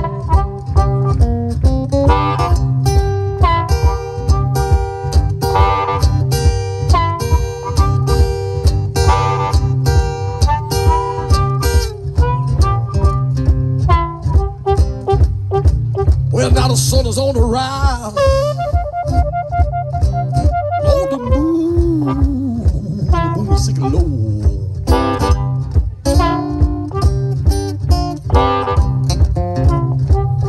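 Instrumental boogie blues break: a Cole Clark acoustic guitar plays a driving boogie rhythm over a steady low beat, with blues harmonica. From about halfway through, the harmonica plays bent, wavering notes, then the guitar riff carries on.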